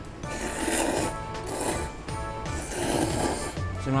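Ramen noodles being slurped hard, three long slurps about a second apart.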